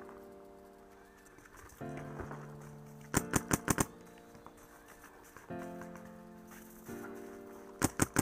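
Paintball marker firing rapid strings of shots: about six quick shots around three seconds in and another short string near the end. Background music with sustained chords plays throughout.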